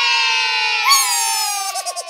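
Children's long drawn-out 'yaaay' cheer, held on one breath and sliding slowly down in pitch, with a wavering break near the end.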